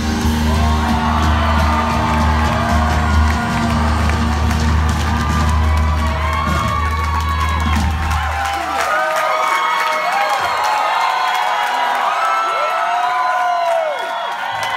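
A rock band's final chord ringing out over a held bass note, which stops about two-thirds of the way through, as the audience cheers and whoops, the whoops growing as the band goes quiet.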